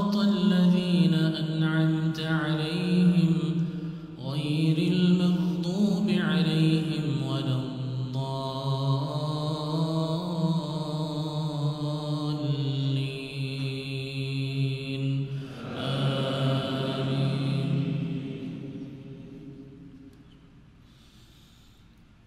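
An imam's melodic Quran recitation in Arabic: a single man's voice through the mosque microphone, chanting long, drawn-out notes. It fades away during the last few seconds.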